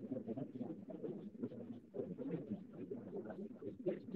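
An audience applauding: many hands clapping at once, fairly softly.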